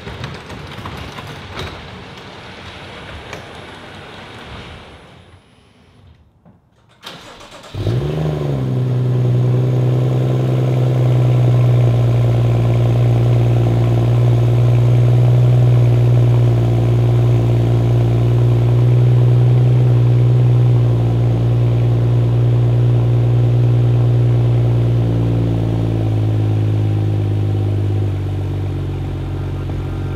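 A garage door opener runs for several seconds, raising the door. About eight seconds in, a BMW 435i's turbocharged N55 inline-six cold-starts with a brief flare, then settles into a steady, high cold idle that steps down slightly near the end.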